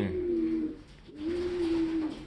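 Domestic pigeons cooing: two drawn-out, steady, low coos with a short gap between them.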